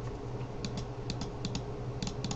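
Computer keyboard keys clicking in scattered, irregular keystrokes, several a second, over a steady low hum.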